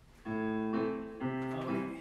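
Piano accompaniment for the ballet exercise, played back as recorded music: about three held chords, one after another, dying away near the end as the music is stopped.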